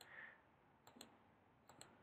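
Faint computer mouse clicks, a few short ones, some in quick pairs about a second in and near the end, against near silence.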